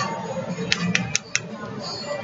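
Four quick light clicks, about five a second, a little past a third of the way in, over a low background of music and voices.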